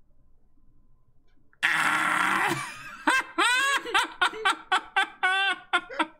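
Men breaking into loud laughter: a sudden breathy burst about a second and a half in, then a run of short 'ha-ha' pulses, about three a second.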